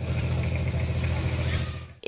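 Steady low drone of a boat engine running on a flooded river, with a hiss of water and wind over it; it fades out near the end.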